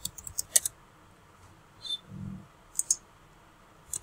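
Scattered computer keyboard and mouse clicks while someone edits code: a quick cluster of clicks in the first second, then single clicks about two and three seconds in.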